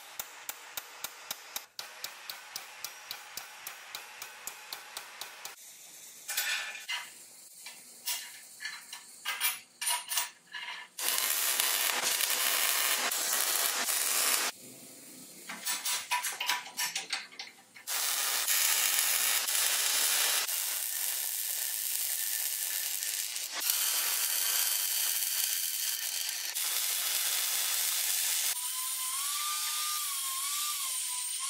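A hammer striking a steel rod clamped in a bench vise, about four blows a second for the first five seconds. Then metal clanks and several stretches of steady hissing noise that start and stop abruptly. Near the end an angle grinder cuts steel with a wavering whine.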